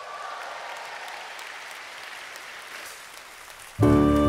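Audience applause at a moderate level. Near the end the live orchestra starts playing, with sustained chords that are suddenly much louder than the clapping.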